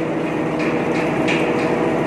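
Mud rotary drilling rig's belt-driven rotary head running at high speed on test: a steady mechanical hum with a constant tone, and a few brief higher-pitched rattles.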